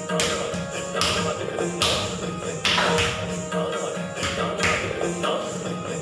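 Kathak footwork: the dancer's feet striking the floor about once a second, each strike with a short jingling hiss, over music with sustained tones.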